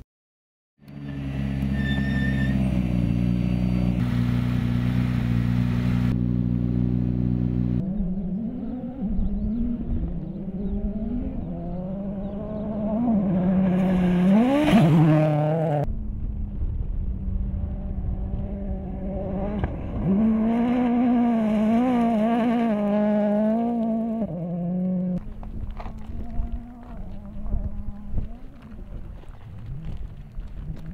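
Ford Fiesta RRC rally car's turbocharged four-cylinder engine running hard on a gravel stage. It holds a steady high note at first, then rises and falls with gear changes and lifts, loudest about halfway through.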